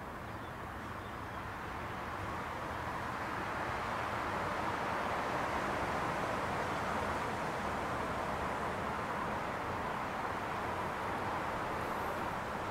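Outdoor ambience: a steady wash of noise with no distinct events. It grows a little louder toward the middle and eases off slightly near the end.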